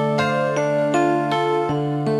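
Instrumental music: a melody of held notes, a new note about every third of a second, over a steady low note, with no singing.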